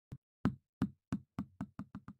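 Intro sound effect: a series of short, sharp knocks that speed up steadily, about eight in two seconds.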